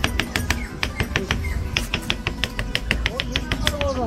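A rapid series of sharp, light clicks, several a second: a tool tapping against a glass sand-art bottle as the coloured sand inside is pressed down and compacted so the layers stay in place.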